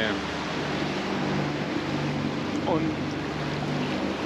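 Wind and seawater rushing past a catamaran's stern underway in a building swell, a steady loud hiss with a low hum beneath it.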